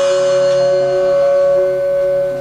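Improvised jazz: a saxophone holds one long steady note while a bass marimba plays softer, shorter notes beneath it.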